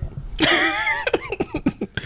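A man laughing into a close microphone: a wavering voiced laugh lasting about half a second, then a run of short breathy bursts.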